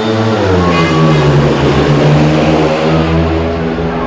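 A pack of four speedway bikes, 500cc single-cylinder methanol-burning engines, racing flat out from the start into the first bend. The engine note dips briefly about half a second in, then holds steady and loud.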